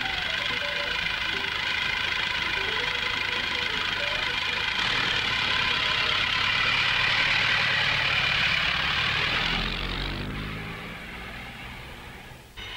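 An engine running, growing steadily louder to a peak about seven or eight seconds in, then fading away after about ten seconds.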